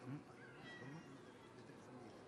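Two faint, short vocal sounds, each rising in pitch, over the quiet room tone of a crowded hall.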